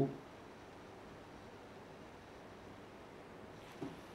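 Quiet room tone with a faint steady hiss, and one brief soft sound near the end.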